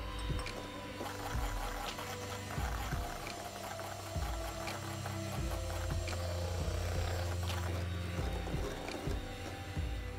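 Electric hand mixer running steadily, its beaters whisking cake batter in a stainless steel bowl, with background music.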